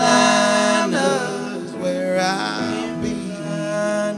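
Live country-rock band playing: male voices singing a held, gliding vocal line over electric guitars.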